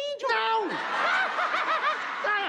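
A single voice gives a short falling exclamation, then many people laugh together: a studio audience laughing at a joke.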